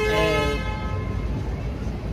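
A vehicle horn sounding one steady tone that ends about half a second in, followed by the steady low rumble of city traffic.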